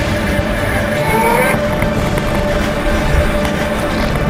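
Steady rumble and buffeting from riding a BMX bike over a dirt track, heard on a camera mounted on the rider and bike, with a held tone and a few short rising tones over it about a second in.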